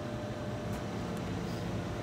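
Steady low mechanical hum of room machinery, with a couple of faint light ticks about the middle.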